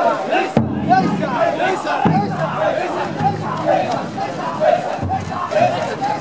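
Many men shouting and calling together in a loud, steady crowd din as they haul a taikodai festival float. A big drum booms about three times, each stroke ringing on low.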